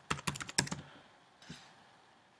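Computer keyboard keys being typed: a quick run of keystrokes in the first second, then a single keystroke about a second and a half in.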